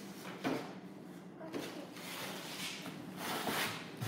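A clear plastic bag crinkling and scraping as a child's hand pushes it across a plastic table top, in a string of irregular rustles that grow busier near the end.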